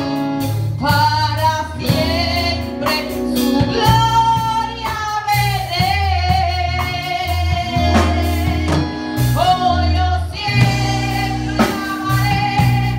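A woman singing a worship song into a microphone with a live church band of keyboard and drum kit, holding long notes with a waver over sustained low bass notes.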